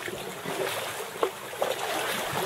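Sea water lapping and splashing against a kayak, a steady wash with a couple of sharper little splashes in the second half.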